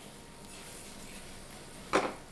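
Sliced mushrooms and onions frying in a pan, a steady soft sizzle, with one sharp knock near the end.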